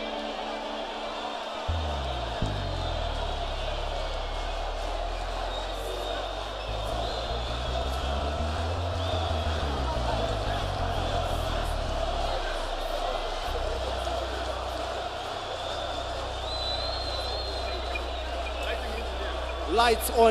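Live band playing a quiet interlude: long, low bass notes that change pitch every few seconds, with a crowd's voices over the top.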